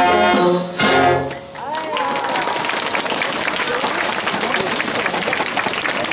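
Brass band holding its final chord, then one short closing hit about a second in, ending the song; the crowd then claps, with voices over the applause.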